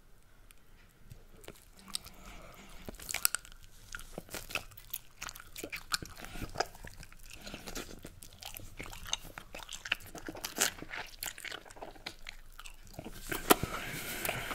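Bubblegum chewed right at a microphone: a dense run of irregular wet smacks, clicks and pops of mouth and gum, starting after about a second of quiet and loudest near the end.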